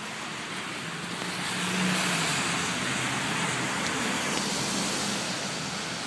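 Vehicle passing on rain-wet pavement: a steady tyre hiss with a low engine hum that swells for a few seconds and then eases off.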